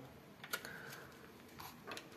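Faint, sparse clicks and taps of small metal hand tools against a door handle's metal rosette as a screwdriver and then a hex key are fitted to its small set screw.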